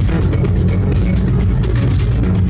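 Live techno played loud over a club sound system: a heavy, steady bass with sharp high percussion ticking on top.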